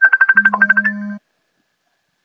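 A short burst of rapid electronic beeps, about a dozen a second, with a low steady tone underneath. It lasts about a second and cuts off suddenly, like a phone ringtone or notification sound.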